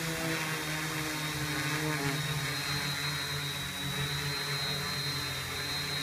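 Hobby King Alien 560 quadcopter's electric motors and propellers humming steadily as it holds a hover on its own under NAZA Lite GPS position hold.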